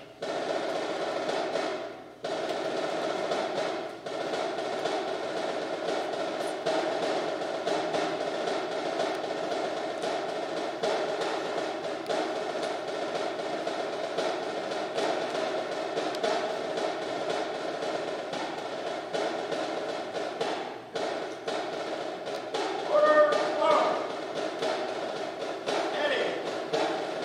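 A drum cadence, with a snare drum beating steadily, accompanies the color guard as the colors are retired.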